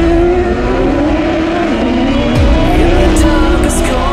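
Autocross buggy engines racing on a dirt track, their pitch rising and falling as they rev and shift.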